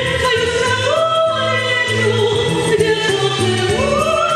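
A woman singing a Soviet-era pop song into a microphone over instrumental accompaniment. She holds long notes, stepping up to a higher held note about a second in and again near the end.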